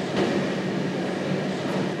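Steady background noise of the room: an even rumble with a faint low hum and no distinct events.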